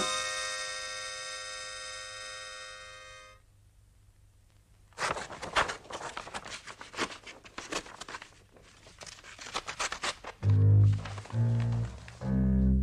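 A held musical chord fades and cuts off. After a short quiet, a run of irregular sharp cracks and rips follows as the paper face of a framed picture cracks and tears. Near the end, a few loud, deep bass notes of music come in.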